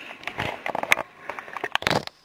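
Close handling noise: irregular crackling and rustling right at the microphone, with a sharp crackle about a second in and a dense run of crackles near the end.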